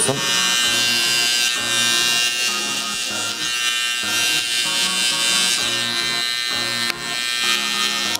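BaByliss Pro hair clipper running steadily, its bare blade taking the sides of the hair down to the skin. Background music with a bass line plays underneath.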